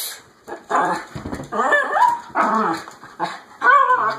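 A small dog yapping: a run of about five short, wavering barks, the last ones the loudest, from a dog that wants to be let outside.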